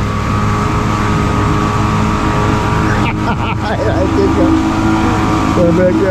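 Outboard motor running at speed as a bass boat circles close alongside, a steady drone with water rushing from its wake.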